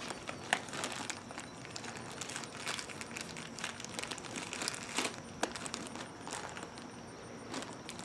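Plastic birdseed bag crinkling and rustling in the hands, in irregular crackles, as a peanut-butter-coated pine cone is worked around inside it.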